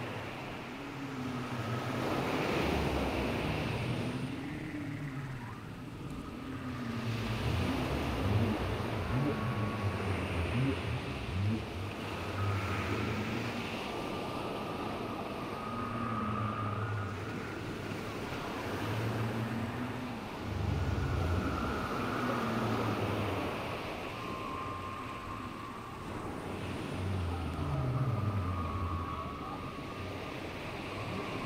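Low, swooping whale calls repeating every couple of seconds over a steady wash of ocean surf, with a few higher held tones.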